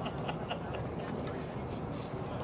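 Several short, sharp calls from distant voices over a steady low background rumble.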